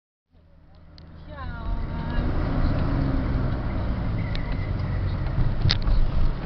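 Car driving along a street, heard from inside the cabin: a steady low rumble of engine and road noise that fades in over the first two seconds, with a few light clicks.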